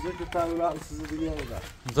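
Speech: a person talking, with a low background rumble.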